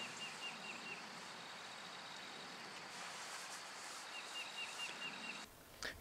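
Faint outdoor ambience with a bird calling two short runs of quick repeated chirps, one at the start and one about four seconds in; the background drops away shortly before the end.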